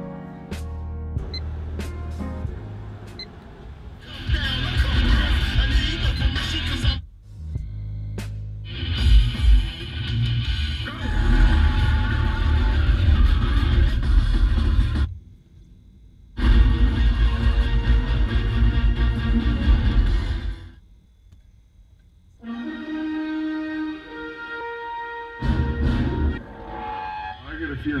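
Music with some voices playing from a car stereo head unit, cutting out briefly several times as it switches from the FM radio to disc playback and a DVD menu.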